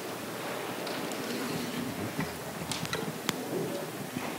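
A congregation getting to its feet and moving together to join hands: rustling clothes and shuffling feet, with a few light knocks, the sharpest a little over three seconds in.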